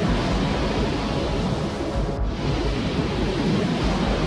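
Steady rushing noise with a deep rumble underneath, faint background music beneath it. The rush drops out briefly about two seconds in.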